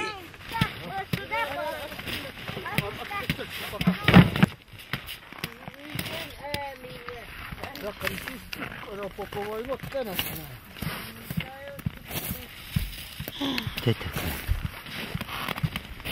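Voices of people talking, with a single loud knock or thump about four seconds in.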